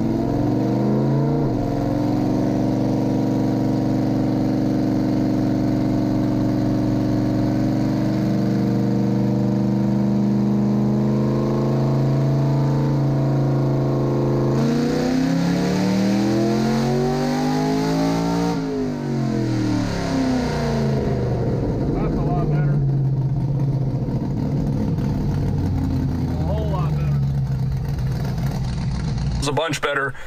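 Cammed 4.8L LS V8 with open zoomie headers, heard from inside the cab of a Chevy S-10, making a full-throttle tuning pull on a hub dyno. The revs climb and hold for about fifteen seconds, then sweep up sharply to a peak, fall away as the throttle is lifted, and drop back to idle for the last several seconds.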